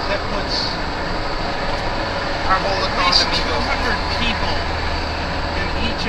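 Car travelling at highway speed: steady road and wind noise heard from inside the moving car.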